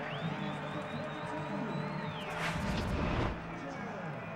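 TV broadcast replay-transition whoosh: a single swelling rush about two and a half seconds in, over steady stadium crowd noise.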